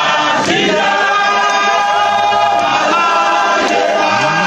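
A large group of men singing together in chorus, many voices holding long notes.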